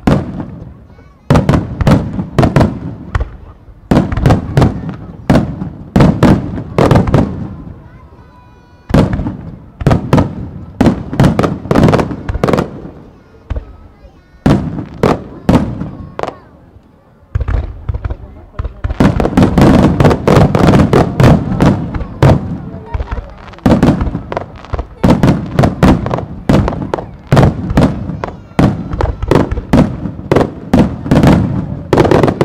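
Aerial firework shells bursting in loud volleys of sharp bangs, each trailing into a rolling echo. The bangs come in clusters with short lulls between them, and from about eighteen seconds in they run together into a dense barrage.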